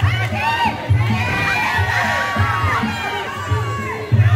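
Crowd at a kickboxing bout shouting and cheering, many voices rising and falling at once, over music with a pulsing bass beat.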